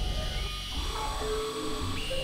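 Novation Supernova II synthesizer playing experimental electronic tones: a low drone that drops out briefly about one and a half seconds in, with sustained tones and gliding pitches above it.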